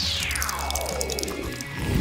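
Background music with a sound effect of one long falling pitch glide, sliding from very high down to low over about two seconds.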